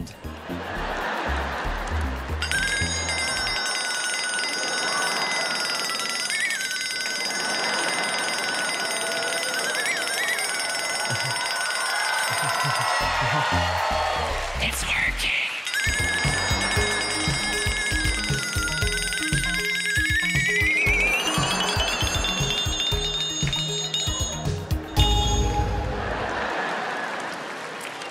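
A long, steady high-pitched tone held for about ten seconds with a couple of brief wobbles. It stops, then returns and glides upward before cutting off near the end. Audience laughter runs underneath.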